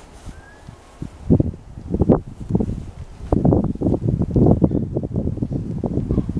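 Irregular rustling and crackling of paper notes being unfolded and handled, along with the rustle of a winter parka. It is sparse at first and grows dense from about three seconds in.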